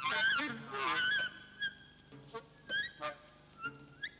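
Saxophone playing free jazz: a loud, wavering, honking phrase that bends up and down in the first second or so, then short separated bursts of high notes. Faint low notes sound underneath.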